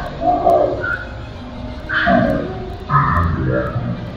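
An indistinct voice in short phrases, words not made out.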